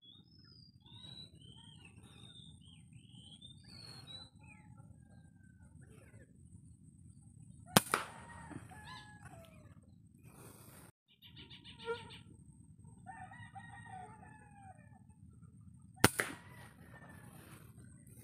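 Marsh birds calling with short chirps that slide up and down in pitch, and later a rapid clucking series; two sharp rifle shots ring out, one about eight seconds in and one near the end.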